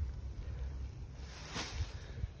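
Low wind rumble on the microphone outdoors, with a brief faint rustle about a second and a half in.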